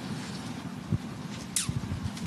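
Press-room background noise: a steady low rumble, with a single thump about a second in and a short, high, falling squeak near the end.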